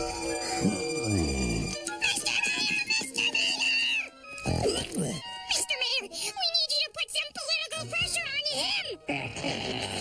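Cartoon soundtrack: background music with a character's wordless vocal noises and sound effects, starting with a sliding, falling pitch and later warbling, wavering sounds.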